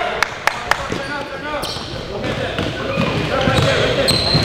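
A basketball dribbled on a gym court: three quick bounces in the first second, at about four a second.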